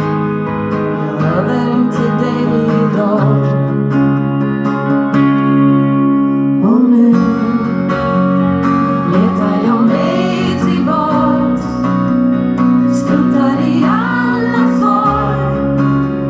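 Live pop song played on acoustic and electric guitars with a woman singing, heard through the hall's PA.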